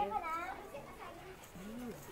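Speech only: a voice trailing off in the first half second, then quieter background voices with one brief call near the end.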